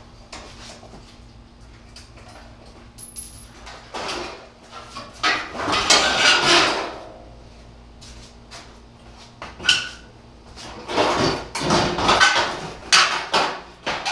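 Car front-end body panels being pulled off and handled, with irregular rattling, scraping and clattering, loudest in spells about halfway through and again near the end. The panels are held on with Cleco sheet-metal fasteners.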